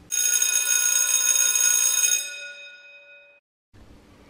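School bell ringing for about two seconds, then its ring dies away over the next second or so, signalling the start of lunch.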